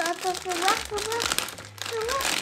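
Plastic-foil blind-bag sachet crinkling as hands grip and pull at it to open it, with many small crackles.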